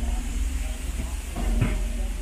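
Outdoor ambience of a busy walkway: a steady low rumble and hiss, with faint snatches of passers-by talking about one and a half seconds in.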